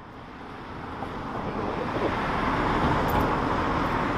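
A car driving past on the street. The noise of its tyres and engine grows steadily louder over about three seconds, then holds.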